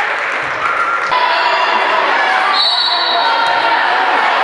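Basketball game sound in a school gym: indistinct voices from players and onlookers, with a basketball bouncing on the hardwood court. About a second in, the sound changes abruptly, and several high, held tones follow.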